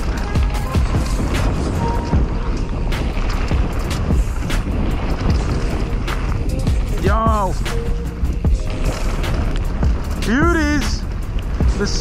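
Mountain bike ridden fast down a dirt and gravel trail, heard from a helmet-mounted camera: continuous tyre roar over the dirt, wind on the microphone, and many small clicks and rattles from the bike over rough ground. Two short whoops cut through, one about seven seconds in and another about ten seconds in.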